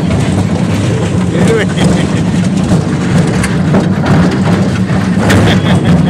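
Miniature ride-on train in motion: a steady low rumble from its running, with a constant hiss over it.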